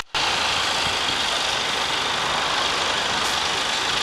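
Mercedes-Benz Actros tractor unit's diesel engine running steadily at low speed as the truck pulls slowly away, after a brief cut-out at the very start.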